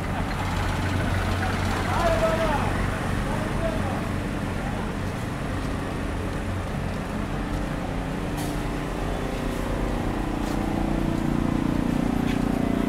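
City street traffic: vehicle engines running with a continuous low rumble, people's voices talking about two seconds in, and a steady engine hum that grows louder near the end.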